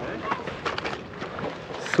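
Scattered light clicks and scuffs of a landing net and its long handle being handled on stone paving as a caught perch is taken out.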